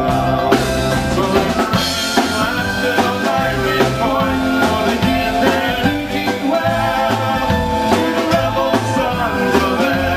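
Live Celtic folk-rock band playing an instrumental break: drum kit, bass guitar, strummed guitar, mandolin and a melody line that fits the tin whistle.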